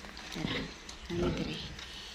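Pigs grunting: two short grunts, the second a little longer, from the sow and piglets in the farrowing pen.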